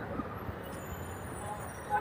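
Steady background street noise with faint voices, one of them briefly louder at the very end.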